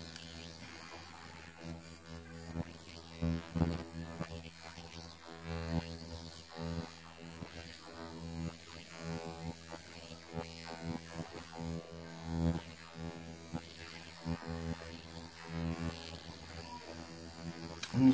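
A handheld ultrasonic skin scrubber (skin spatula) running with a steady electric hum as its metal blade is drawn over the skin of the face. Irregular louder bumps come and go over the hum.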